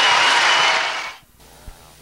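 Studio audience applauding, then cutting off suddenly about a second in, leaving quiet.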